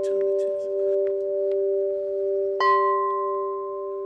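Large tubular wind chime ringing with several long, low, sustained tones; one tube is struck afresh about two and a half seconds in, adding higher ringing notes.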